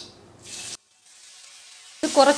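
Faint sizzling of hot oil in a kadai as crushed shallots are tipped in, a thin hiss broken by a brief cut to silence just under a second in.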